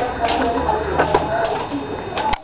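Indistinct voices mixed with a bird cooing, with a couple of light clicks about a second in.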